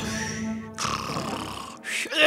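Cartoon hermit crab snoring: two long snores, each a little under a second, over background music.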